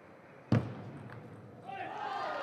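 A table tennis ball struck sharply about half a second in, the loudest sound, then a fainter ball tap, as a rally is won. A voice starts near the end.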